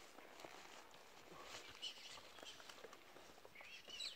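Near silence: faint outdoor ambience with small scattered rustles and clicks, and a faint high chirp near the end.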